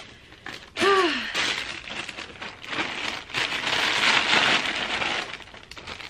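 Plastic packaging crinkling and rustling as it is handled close to the microphone, for about four seconds, after a brief hum of voice about a second in.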